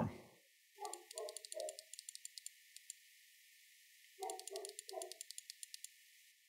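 Two runs of rapid, faint computer-mouse clicks, about a second each, as an on-screen value is stepped one click at a time. Each run has three short, muffled low sounds under the clicks.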